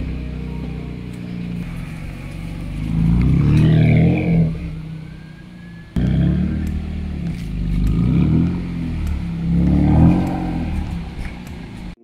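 BMW E46 coupe's engine and exhaust as the car is driven slowly across bumpy grass, revs rising and falling several times as it pulls away and eases off. The sound jumps abruptly about halfway through.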